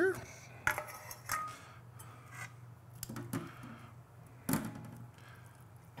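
A few separate clinks and knocks of crockery and serving utensils as a ceramic dish is uncovered and food is plated, one short ringing clink about a second in and a louder knock about four and a half seconds in.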